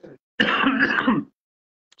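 A man clearing his throat once, a loud rasp lasting about a second.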